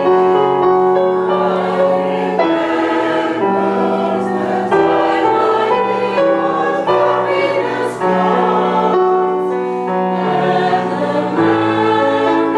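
Mixed chamber choir of men and women singing a Broadway show tune in several parts, with piano accompaniment.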